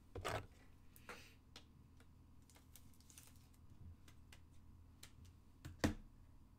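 Handling of trading cards and the cardboard box: light irregular clicks and a couple of short rustles, then one sharp knock near the end as a hand reaches to the box.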